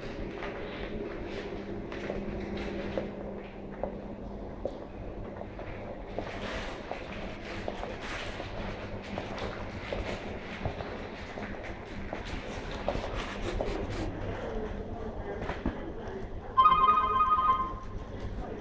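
Room tone of a quiet lounge with a steady low hum and scattered faint clicks. Near the end a telephone rings once, a loud rapid warbling trill lasting just over a second.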